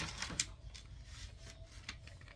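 Self-adhesive book-covering paper crinkling and crackling as it is handled, with a few sharp crackles, the loudest one about half a second in.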